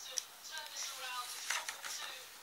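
Pages of a glossy picture book being handled and turned by hand, with a few crisp paper clicks near the end, over faint television commentary.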